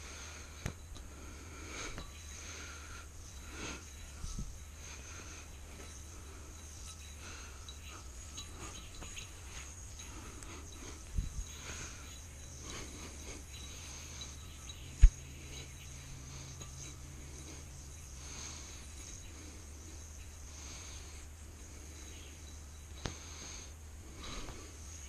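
A yoyo being played: faint rustling of string and sleeves over a low steady hum, with a few sharp clicks, the loudest about fifteen seconds in.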